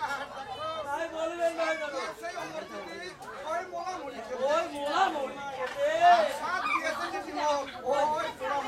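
Voices talking, overlapping in chatter, with no music playing.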